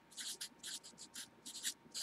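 Felt-tip marker writing on paper: a quick run of short, faint scratchy strokes as a few characters are written.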